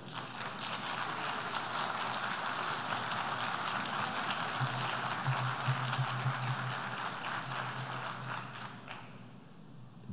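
Audience applauding, swelling up in the first second and dying away near the end.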